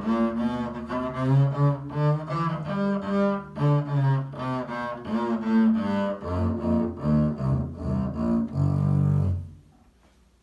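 Double bass played with the bow, running through a scale of separate sustained notes. It ends on a longer low note that stops about half a second before the end.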